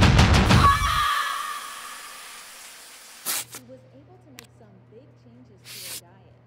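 A loud, aggressive film score cuts off about a second in and its echo dies away. Then a quiet stretch follows with a steady low hum and two short, breathy hisses.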